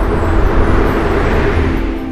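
A whoosh sound effect swelling up and falling away over ambient music with a low, steady drone, as the animated logo bursts into particles.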